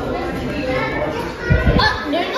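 Background chatter of children and other visitors' voices in a large indoor hall, with a low thump about one and a half seconds in.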